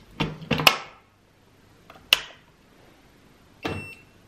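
Plastic housing of a Munbyn label printer knocking and clicking as it is set down and pushed into place on a shelf. A cluster of knocks comes in the first second, a single sharp click about two seconds in, and another short knock near the end.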